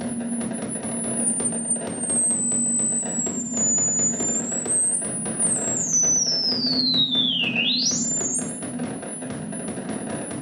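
Experimental electronic improvisation on modular synthesizer: a high, thin whistling tone glides slowly down and back up, then sweeps steeply down about three-quarters of the way through and jumps straight back up. Underneath run a steady low drone and a rapid stream of clicking pulses.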